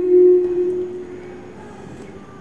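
A woman humming one long held note with her lips closed, unaccompanied, fading away over the first second or so.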